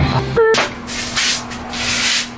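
Several swells of scratchy rubbing and rustling: handling noise as a machined metal plate is lifted and turned in the hands, over a steady low hum.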